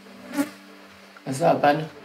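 A brief spoken phrase, with a thin steady buzz running underneath.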